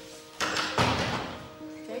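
Thuds of a tall wooden cabinet being opened: a sudden knock a little under half a second in and another just after, over quiet background music with held tones.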